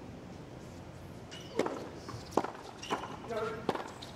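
Tennis ball struck by rackets four times in a quick doubles exchange, the hits coming less than a second apart, over a low crowd murmur.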